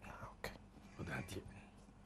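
A few faint, brief sounds of a soft voice in a quiet pause.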